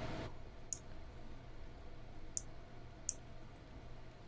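Three sharp computer mouse clicks, the last two close together, over a faint steady low hum.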